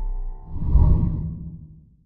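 A whoosh sound effect swells about half a second in and dies away, over the fading tail of the intro music.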